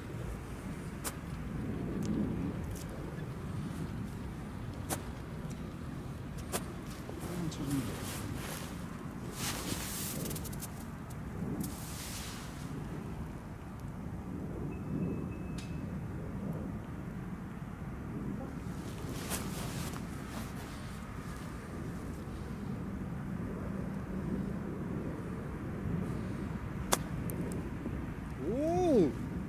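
Quiet outdoor background of faint distant voices and a low rumble, with a few soft rustles. Near the end comes a single sharp click: a golf iron striking the ball on a short chip shot.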